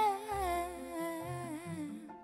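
A woman's wordless vocal line, sliding slowly downward in pitch, over a soft pop-ballad accompaniment with low bass notes.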